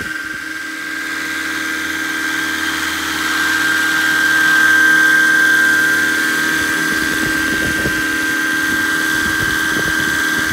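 Electric-powered scale RC helicopter hovering: a steady high whine from the electric motor and drive over the lower hum of the rotors, growing louder as it comes closer around the middle. From about seven seconds in, a low rumble of air buffets the microphone.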